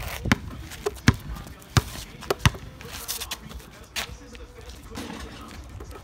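Basketball dribbled on a paved driveway: a handful of sharp, irregular bounces in the first few seconds and a last one about four seconds in.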